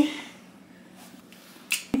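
A few faint clicks in a small room, then one short, sharp click just before the end.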